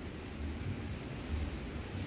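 Heavy rain heard from indoors as a steady rushing noise with an uneven low rumble.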